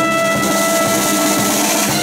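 Marching band playing as it passes: brass holding sustained notes over bass drum, snare and cymbals.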